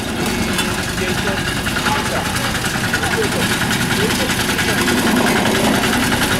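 Engine of a walk-behind double-drum roller compactor running steadily, growing louder just after the start.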